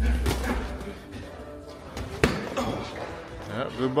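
A boxing glove landing a punch to the body: one sharp thud about two seconds in, with a few fainter knocks around it. Background music with a heavy bass plays at the start and its bass cuts out soon after.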